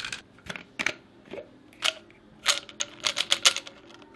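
An irregular series of sharp clicks and light knocks of small hard objects, sparse at first and coming thick and fast in the second half.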